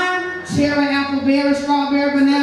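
A woman's voice through a microphone holding one long, steady note, starting about half a second in and lasting past the end.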